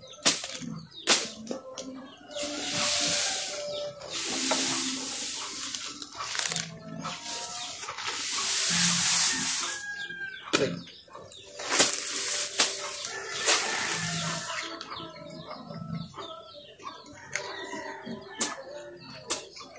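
Dry cut grass and weeds rustling and crackling as they are gathered by hand and heaped onto a pile, in several bursts of a second or two each, with scattered snaps of stems.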